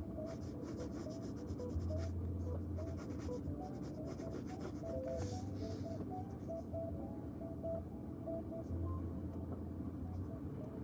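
A pen scratching on paper in many short strokes as a diagram is drawn, over a faint low hum that comes and goes.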